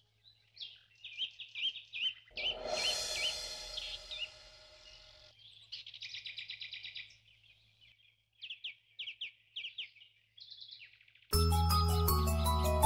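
Small birds chirping in quick, repeated high notes, with a louder, rougher stretch in the first half. Near the end, music with chiming mallet notes comes in suddenly.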